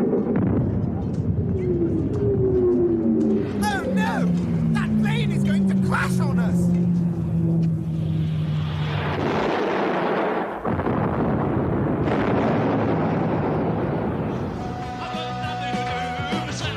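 Sound effect of an airliner diving in, its engine whine sliding steadily down in pitch, then a long, loud crash about eight seconds in that runs on as a rumble. Rock music starts near the end.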